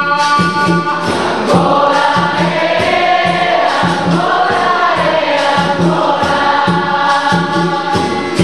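Capoeira roda music: a group singing together over berimbaus and pandeiros, with a steady beat.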